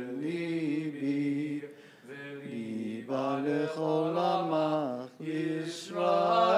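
A man's voice chanting Hebrew prayer: long, wavering held notes in melodic phrases, with short breaks for breath about two seconds in and again near the end.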